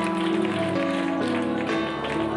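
Music: sustained keyboard chords, held and changing to new chords about three times.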